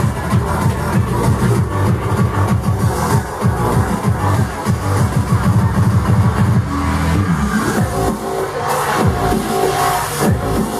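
Techno played live from a laptop and a lit pad controller, with a driving beat and heavy bass. About seven seconds in the bass drops away, leaving held synth tones.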